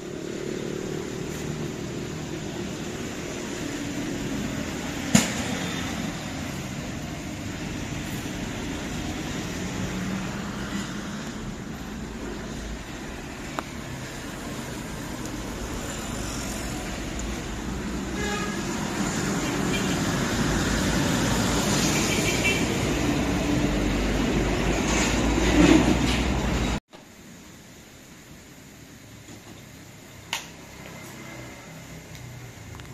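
City street traffic noise with motorbikes and cars passing, heard from inside a parked car. It grows louder toward the end and cuts off suddenly.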